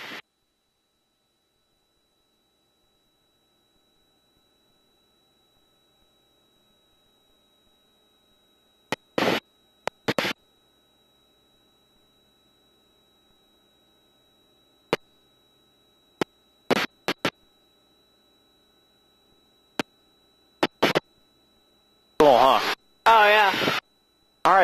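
Aircraft intercom feed, near silent with a faint steady high whine. Several short bursts of noise cut in and out as the headset microphones key open, and a voice comes in near the end. The engine is not heard.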